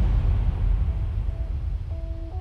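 Deep rumbling tail of a logo sting's whoosh sound effect, slowly fading. A few faint sustained musical notes come in about a second in and grow clearer near the end.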